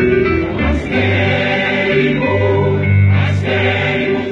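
A mixed choir of men's and women's voices singing a Greek song together.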